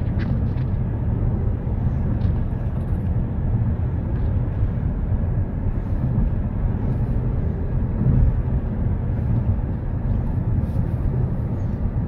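Steady road and engine noise of a car cruising at highway speed, heard from inside the cabin: an even low rumble that holds level throughout.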